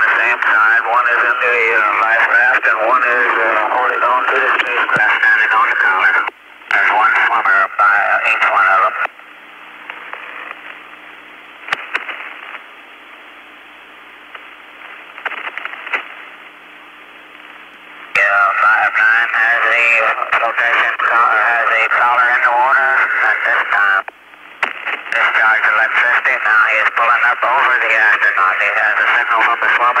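Radio voice transmissions over a narrow, hissy channel, too garbled to make out. Around the middle there are about nine seconds of open-channel hiss with a faint steady hum before the voices return.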